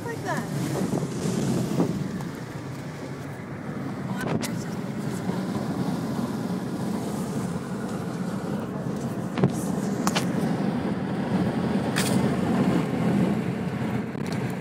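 Steady low road and engine rumble heard inside a car's cabin while driving at highway speed, with a few brief sharp knocks.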